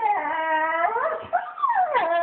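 A dog whining and howling in long drawn-out cries that slide up and down in pitch, ending in a long falling wail. It is the crying of a dog in separation distress, missing its absent owners.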